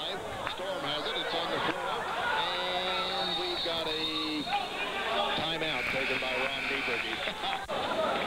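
Crowd noise and voices in a high school basketball gym. A steady pitched tone is held for about two seconds, starting a little over two seconds in.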